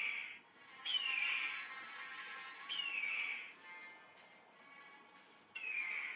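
A bird of prey's screeching cry, falling in pitch, heard four times (at the start, about a second in, about three seconds in and near the end), over soft sustained background music.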